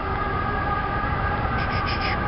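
City traffic: a low rumble under a steady hum of several held tones.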